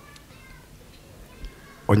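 Faint background murmur with a few faint, high, wavering sounds, then a man's voice through a microphone starting loudly near the end.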